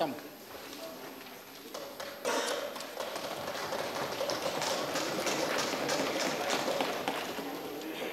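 Many members thumping their desks in welcome: a dense, uneven patter of knocks that starts about two seconds in and keeps going, over a low murmur of voices.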